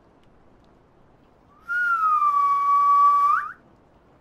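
A single whistled note lasting about two seconds. It starts slightly higher, settles onto a steady pitch, then flicks sharply upward as it ends.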